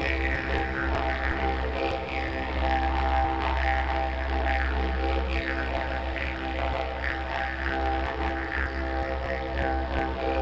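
Plain eucalyptus didgeridoo playing a steady, unbroken low drone, its upper overtones shifting constantly as it is voiced.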